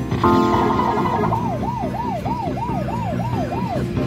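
Slot machine bonus-round sound effects: a short electronic chime as a square is picked, then a siren-like electronic warble sweeping up and down about three times a second for a couple of seconds, as the pick-until-you-match-3 board is revealed.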